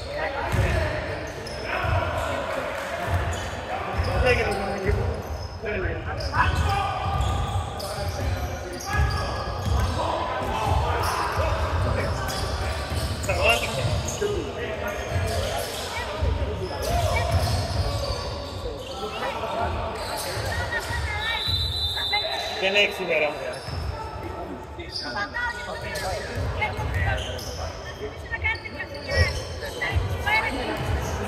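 Pickup basketball game on a hardwood court: the ball bouncing and dribbling, with sneakers squeaking and players calling out. A high whistle-like tone is held for about a second and a half a little past the middle.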